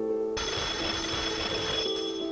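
A telephone bell rings once for about a second and a half, starting suddenly, over soft background music.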